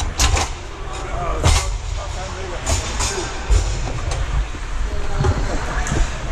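Ice hockey sounds at close range: scattered sharp clacks of sticks and puck on the ice and boards, and skates on the ice, over a steady low rumble.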